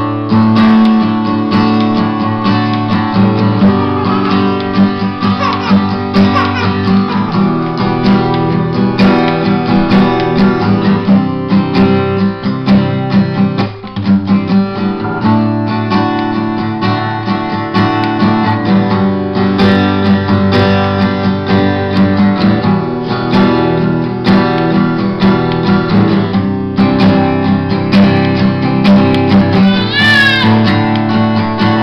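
Steel-string acoustic guitar strummed steadily in chords, with a brief break about fourteen seconds in.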